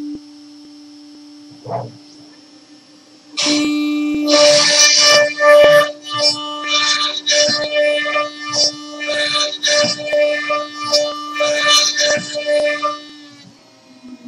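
A CNC router spindle hums steadily. From about three seconds in, its bit cuts into a wooden cylinder turning on the rotary axis: a loud, uneven tearing with a ringing pitch, as the cut runs deeper and back out. The cutting and the hum stop near the end as the bit lifts clear.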